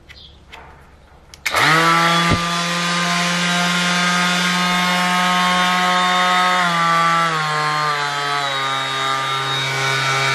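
DeWalt cordless random orbit sander switched on about a second and a half in and running free with no sandpaper on its pad, a steady motor whine. Around seven seconds in its pitch steps down as the variable-speed dial is turned to a lower setting.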